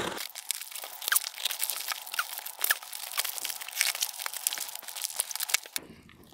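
Plastic film wrapping crinkling and tearing as a shrink-wrapped cardboard parcel is cut open with a cutter and unwrapped: a dense crackle of small crisp clicks that stops shortly before the end.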